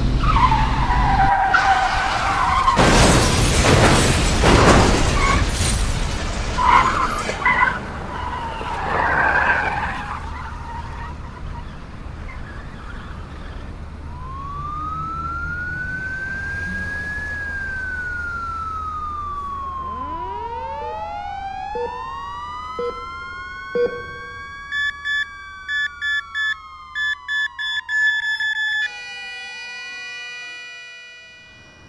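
Sound-designed car crash over a black screen: a loud rush of noise with screeching in the first ten seconds. Then a siren tone rises and falls and spreads into several overlapping gliding tones, with quick regular beeping near the end.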